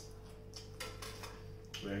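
A person chewing a bite of toasted sandwich: a few short, soft mouth and chewing noises about half a second to a second in, over a steady low hum. A voice starts speaking near the end.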